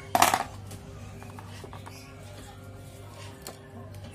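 One sharp metallic clink about a quarter second in, from a small metal part being handled on the workbench, followed by a faint steady hum.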